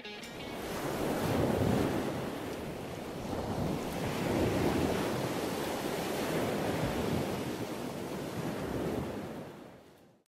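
Ocean surf: waves washing onto a beach in a steady hiss that swells and eases a few times, then fades out near the end.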